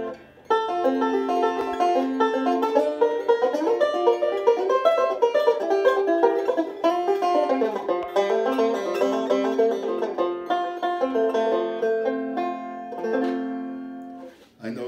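Five-string resonator banjo fingerpicked in a fast, rolling run of plucked notes. It starts about half a second in and stops just before the end.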